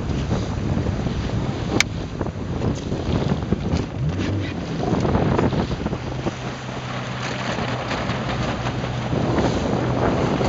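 Wind buffeting the microphone over choppy water splashing around a small inflatable boat. A low steady engine hum comes in through the second half, and there is a single sharp click about two seconds in.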